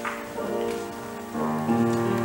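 Soft piano music playing held chords, with a new chord coming in near the end.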